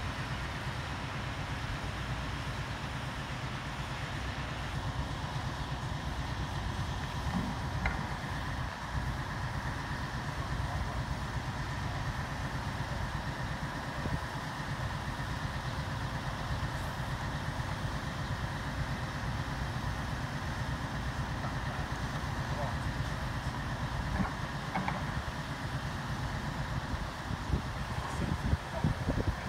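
Lorry-mounted crane at work: the truck's diesel engine running steadily to drive the crane's hydraulics while it slowly lowers a suspended stone load. A steady whine sits over the low engine rumble, with a few faint knocks.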